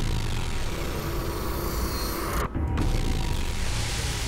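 Cinematic sound-design hits from Heavyocity Gravity's Breakout preset, played from the keyboard: a dense, noisy impact with a heavy low rumble that holds on, then a different hit coming in just under three seconds in.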